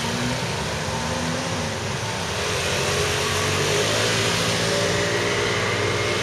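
A motor vehicle's engine running close by amid street noise, growing a little louder about halfway through.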